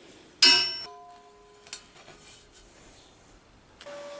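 A single hammer blow on a steel pulley disc, seating it inside the steel ring rim; the steel rings on with several clear tones for about two seconds. A lighter knock follows about a second later.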